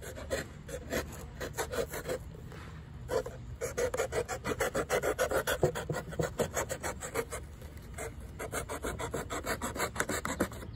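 A knife sawing through the bottom edge of a paper bucket in quick rasping strokes, several a second, pausing briefly twice.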